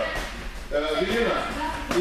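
Voices talking in a large hall, with a single sharp smack near the end.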